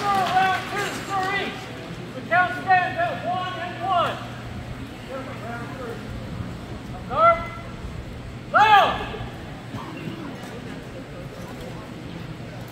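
A high-pitched voice calling out loudly in four short bursts of shouting, with quieter gaps between, over a steady low hum.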